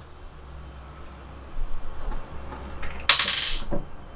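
Handling noise from small carburetor parts on a tabletop: a short scrape about three seconds in, then a light click.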